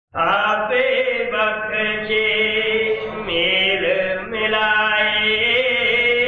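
A voice chanting a devotional hymn in long held, melodic notes, over a low steady drone.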